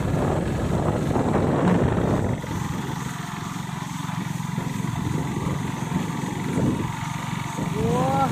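Wind rushing over the microphone with a steady low rumble from a vehicle moving along the road, louder for the first two seconds and easing after. A few short gliding chirps come near the end.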